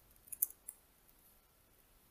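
Faint clicks of computer keyboard keys being typed, a quick run of about four keystrokes in the first second.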